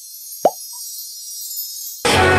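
A single short cartoon 'plop' sound effect about half a second in, sweeping quickly up in pitch, with a tiny blip just after it, over faint background music that slowly swells.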